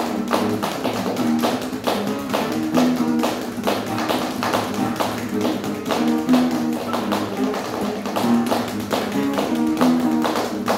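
Acoustic guitar played in quick rhythmic strummed chords, with drumsticks tapping a steady beat on a small percussion instrument.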